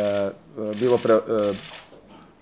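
A man speaking Serbian, a short stretch of speech that trails into a pause near the end.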